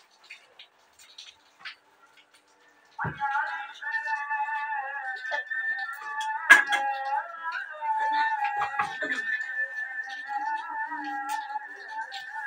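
A chanted voice over a loudspeaker, the Islamic call to prayer, comes in suddenly about three seconds in after near silence and goes on in long, wavering melodic notes.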